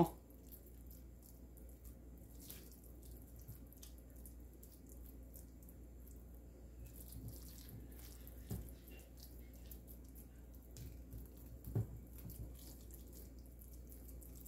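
Faint wet squishing of raw ground beef being rolled into meatballs by hand in a glass bowl, with a few light knocks, the loudest near the end.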